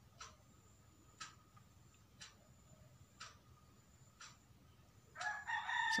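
A clock ticking faintly about once a second. Near the end, a rooster starts crowing loudly.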